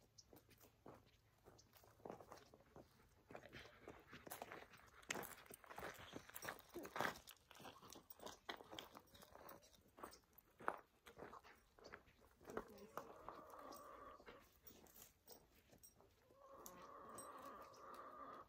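Footsteps of a person and dogs crunching on a dry, stony dirt path as they pass close by, a run of scattered crunches and clicks. Near the end come two drawn-out pitched sounds a few seconds apart.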